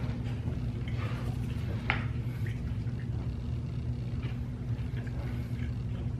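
Steady low hum of room background noise, with a few faint short clicks, the clearest about two seconds in.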